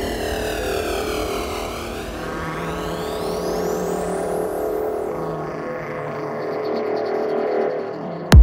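Psytrance breakdown without a kick drum: held synthesizer chords under pitch sweeps that fall for about two seconds and then rise. The bass drops out near the end.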